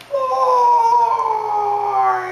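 A man's loud, long, drawn-out yell through cupped hands: one sustained call that slowly falls in pitch.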